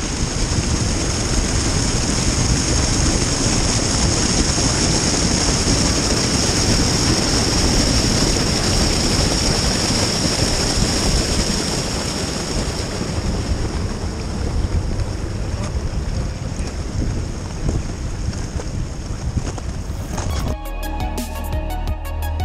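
Glacial meltwater stream rushing steadily through a narrow ice channel on the glacier surface. Music begins near the end.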